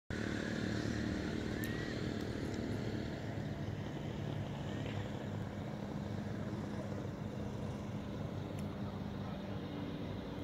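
Steady low hum of an engine running, with a couple of faint clicks.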